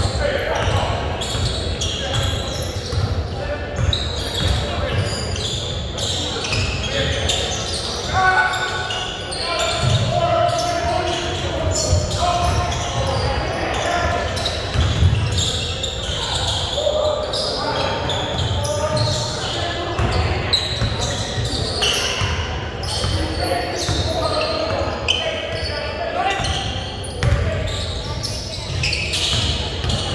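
A basketball bouncing on a hardwood gym floor with repeated thuds, among indistinct voices of players and spectators, echoing in a large gym.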